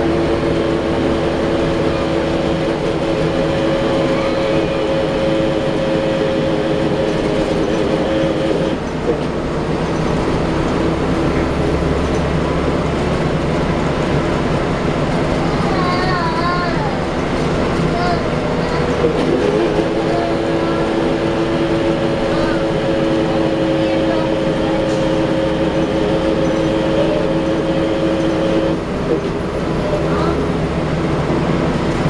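Cabin sound of a 2010 Gillig Low Floor BRT transit bus under way, its Cummins ISL diesel and Allison B400R automatic transmission running with a steady rumble. A steady whine over it stops about nine seconds in and comes back about twenty seconds in.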